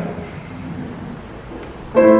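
Steady background noise in the church with no clear pitched sound, then a baby grand piano begins playing with a loud first chord right at the end.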